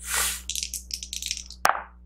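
Two six-sided dice rolled into a dice tray. There is a short rattle, then a run of quick clicks as they tumble, then one sharp knock about a second and a half in as they settle.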